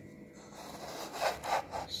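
Handling noise: a few rough rubbing strokes in the second half, from a hand moving the recording phone around.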